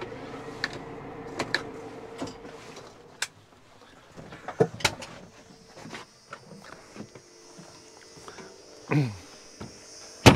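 Valtra tractor cab: a steady engine hum that dies away about three seconds in, then scattered clicks and knocks of the cab door and fittings as the driver climbs out.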